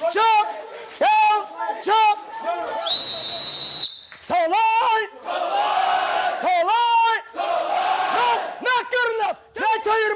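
Drill instructors yelling at recruits in short, harsh bursts, with several voices shouting at once at times. A single steady whistle blast about a second long comes about three seconds in.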